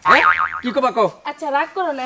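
A short, fast-wobbling boing-like tone, a comedy sound effect, in the first half second, then Bengali dialogue between a man and a woman.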